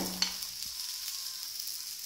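A wheat dosa sizzling steadily on a hot dosa tawa, a soft, even frying hiss.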